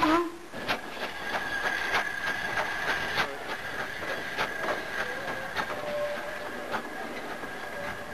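Train wheels running over rail joints, clicking at an uneven rhythm over a steady high whine, with a short loud burst right at the start.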